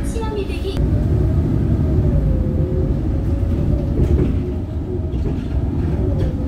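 Inside a moving city bus: a steady low engine and road rumble, with a steady droning whine from the drivetrain.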